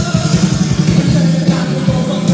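Live rock band playing, with drums keeping a steady beat under guitars.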